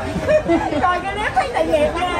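Several people talking, voices overlapping in conversation.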